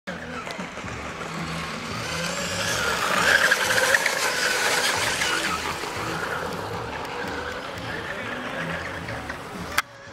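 Radio-controlled racing hydroplane boat running at speed with a high-pitched whine, growing loudest as it passes closest a few seconds in and then fading as it runs off. An abrupt click comes just before the end.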